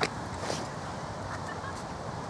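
Outdoor park ambience: steady low background rumble, with a sharp click right at the start and a short harsh call-like sound about half a second in. Faint brief chirps follow.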